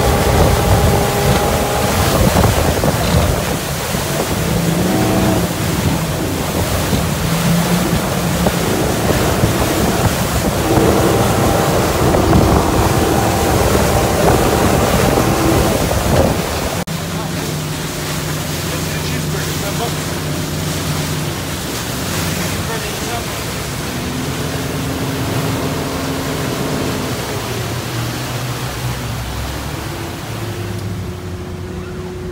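Yamaha 250 four-stroke V6 outboard running at speed, with rushing wake water and wind on the microphone. About halfway through the sound cuts to a quieter, steadier engine note with lower tones.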